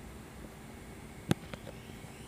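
A single sharp click about a second in, followed by two faint ticks, over a faint steady background hiss.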